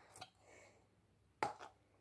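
Quiet handling of a small plastic bottle: a faint click near the start, then a sharper click about a second and a half in as its cap is worked open.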